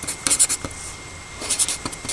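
Pen writing on paper: two short runs of quick scratchy strokes, about a quarter second in and again about a second and a half in.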